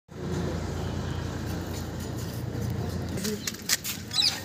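A steady low rumble, then a few short, sharp hissing bursts near the end as a flower-pot firecracker (anar) catches light.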